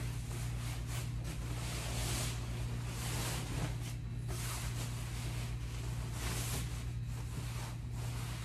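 Fabric mattress cover rustling and sliding as it is pulled and bunched off a vinyl-covered mattress, in uneven surges with brief pauses, over a steady low hum.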